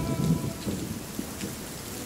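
Steady rain ambience with a low, uneven rumble underneath, typical of thunder.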